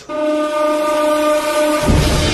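Background music: one long held chord, then a beat with bass comes in near the end.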